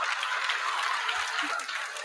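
Studio audience applauding, with some laughter mixed in, easing off near the end.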